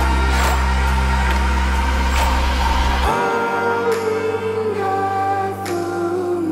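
Background song with a sung vocal line over sustained bass notes and light percussion; the deep bass drops out about three seconds in.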